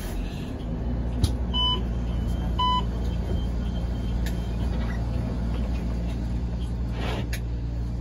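Two short electronic beeps about a second apart, near the start, from a Muni trolleybus at a stop, typical of its door-closing warning. Under them runs the bus's steady low hum, which swells a moment earlier, with a few faint clicks.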